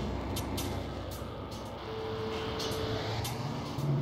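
VCV Rack software modular synthesizer playing dark ambient music: a noisy rumbling drone with scattered clicks, and a single steady tone held for about a second in the middle.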